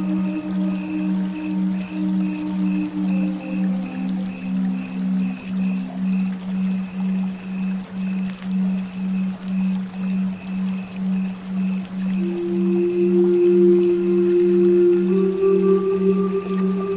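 Meditation music: a steady low binaural-beat drone pulsing about twice a second, under long held flute notes. One note fades out in the first few seconds, and a new one comes in past the middle and steps up in pitch near the end.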